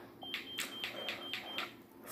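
An electronic beeper sounding a quick run of short high beeps, about four a second, lasting over a second and then stopping.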